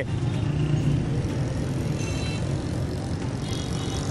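Steady rumble of road traffic passing close by.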